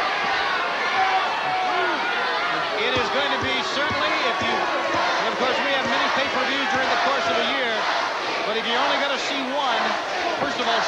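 Men's voices talking continuously over arena crowd noise, with a few thuds of bodies hitting a wrestling ring mat.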